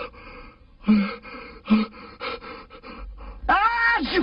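Cartoon sneeze wind-up: a string of breathy, gasping intakes, about four of them, building to a drawn-out voiced 'aah' that rises and falls in pitch near the end, just before the sneeze goes off.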